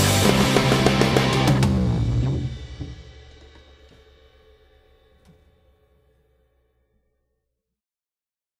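The end of a rock song: the full band with drums and guitar plays loudly for about two seconds, then the final chord rings out and dies away to silence over the next few seconds.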